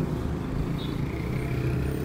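Street traffic: a steady low rumble of vehicle engines running nearby.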